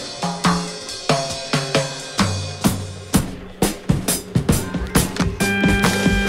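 Drum kit playing a funk breakbeat, with kick, snare and hi-hat, over a bass line, without piano. A held higher note joins near the end.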